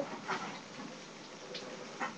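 A pet hamster running on its exercise wheel, heard faintly as light, irregular ticking.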